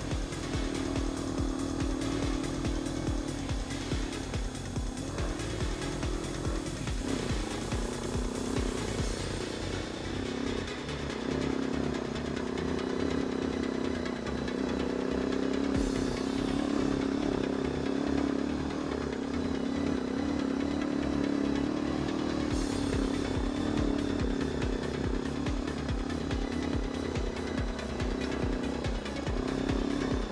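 Quad (ATV) engine running at low speed on a rough trail, its revs rising and falling, with background music playing over it.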